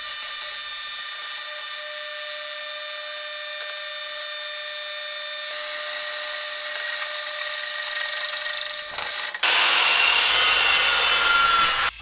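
Drill press boring a 5/8-inch hole through 3/8-inch steel plate: a steady whine of the motor and the bit cutting steel for about nine seconds. Then it cuts suddenly to a louder, harsher hiss of an abrasive chop saw cutting steel square tubing.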